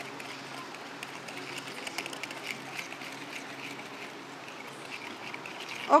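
Wire whisk beating curd and brown sugar in a plastic mixing bowl, a run of quick light clicks and scrapes as the sugar is worked in, over a faint steady hum.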